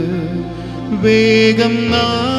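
Man singing a slow devotional hymn into a microphone over electronic keyboard accompaniment. A held note trails off, then a new sustained note comes in about a second in.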